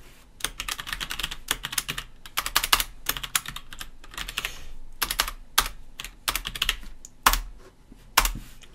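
Typing on a computer keyboard: runs of quick keystrokes in clusters, with a single louder key press near the end.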